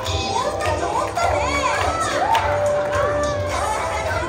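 Many young children shouting and cheering together over stage music with a steady low beat; their overlapping calls rise and fall in pitch, and one voice holds a long note about three seconds in.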